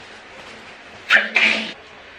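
A woman sneezes once into a tissue, about a second in: a short, sharp two-part burst. It comes just after a dose of nasal spray for a blocked nose.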